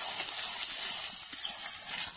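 Spinach and potato curry sizzling steadily in a metal wok while a metal spoon stirs it, with light scrapes and clicks of the spoon against the pan.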